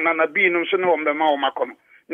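A man speaking, with a short pause near the end.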